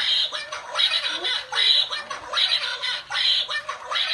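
Battery-powered dancing plush duck toy squawking in a tinny, high voice through its small speaker, the squawks repeating a little more than once a second.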